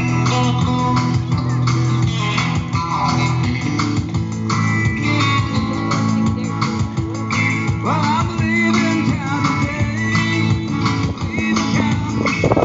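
A small live band playing: acoustic guitars picked and strummed over an electric bass guitar, amplified through a PA speaker.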